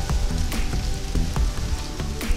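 Wind buffeting the microphone with a steady low rumble, over faint background music.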